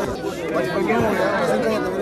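Speech only: a man talking, with other voices of a crowd around him.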